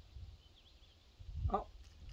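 Quiet outdoor background with a low rumble, and a few faint, high bird chirps about half a second in. A man's voice speaks one short word near the end.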